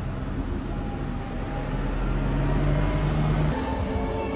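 Bus engine running and revving up, its low note rising in pitch from about a second and a half in, over a steady traffic rumble; the sound cuts off suddenly shortly before the end.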